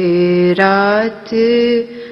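A solo voice singing a slow, chant-like melody in three long held notes, each bending slightly in pitch, with a short break after the second.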